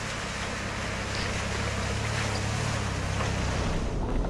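A four-wheel-drive ute's engine running steadily as it drives through a shallow creek ford, with the rush and splash of water around the wheels, slowly growing louder.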